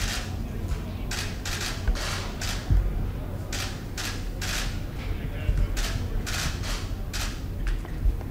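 Camera shutters clicking again and again at a photo shoot, irregular at about two clicks a second, over a low background rumble.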